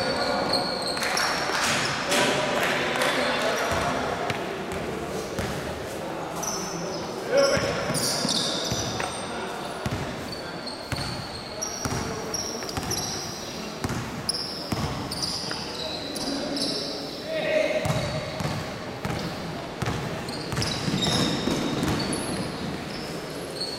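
Basketball being dribbled and bouncing on a hardwood court, with short high-pitched squeaks of sneakers on the floor and indistinct players' voices, all in a reverberant gym.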